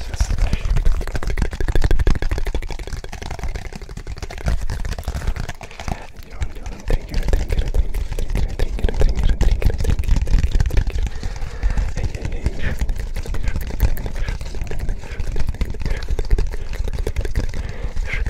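Close-miked handling of a silicone pop-it fidget toy against the microphones: a dense, continuous run of small clicks, rubs and low thumps, with soft whispering mixed in.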